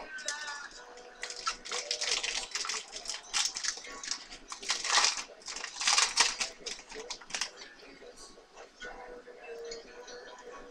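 A trading-card pack being opened and its cards handled: an irregular run of crinkling, tearing and soft clicks, loudest about five and six seconds in.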